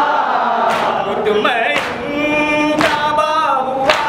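Male voices chanting a nauha, a Muharram lament, into a microphone with others joining in, over rhythmic chest-beating (maatam) that strikes about once a second.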